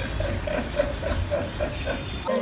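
A man laughing: a quick run of short pitched 'ha' sounds, about three or four a second.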